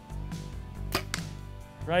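A compound bow is shot: a sharp crack at the release, then a second sharp hit a fraction of a second later as the arrow's Slick Trick four-blade broadhead strikes a beef cow foreleg bone and sticks in.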